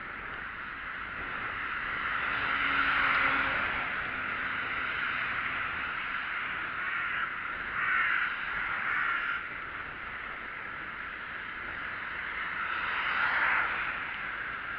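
A crow cawing in several harsh bouts, the loudest about three seconds in, again around eight seconds and near the end, over steady wind and riding noise on a bicycle-mounted camera.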